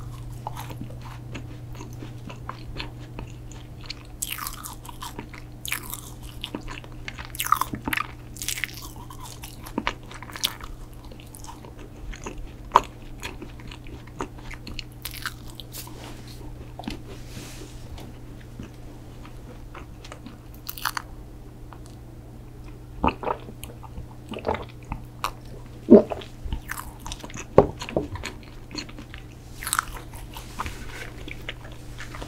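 Close-miked chewing of a bitten chocolate protein cookie, with crumbly crackles and sharp clicks from the mouth. The crackles come thickest in the first third and again near the end, with a steady low hum underneath.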